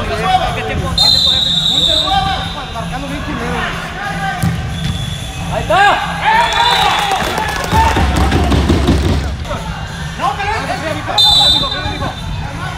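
Indoor soccer match: players shouting to each other over the play, with ball thuds and knocks. Two referee's whistle blasts, a longer one about a second in and a short one near the end.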